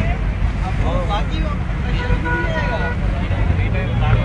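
People talking over a steady low rumble, with a held high tone for about a second in the middle.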